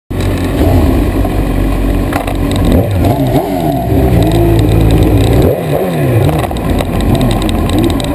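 Suzuki GSX-R1000's inline-four engine running at low revs as the bike rolls slowly, its pitch rising and falling with throttle changes about three seconds in and again about five and a half seconds in.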